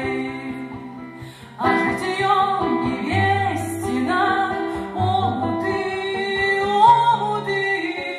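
Two women singing together with acoustic guitar accompaniment, captured on a voice recorder. After a short lull the singing comes back in strongly about one and a half seconds in.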